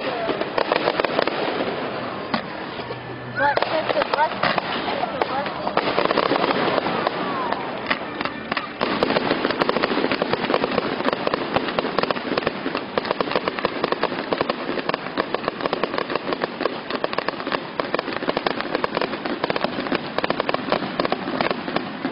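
Fireworks crackling: a fast, dense run of small pops, thickest from about nine seconds on. Voices of onlookers mix in during the first part.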